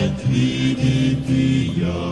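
Background music: a low-voiced vocal group singing a Croatian song, holding sustained chords that move to new notes about every half second.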